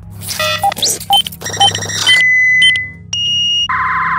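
Electronic transition sting of glitchy synth beeps and short tones over a steady low bass hum. A held high tone sounds about two seconds in, and a buzzy pulsing tone fills the last second.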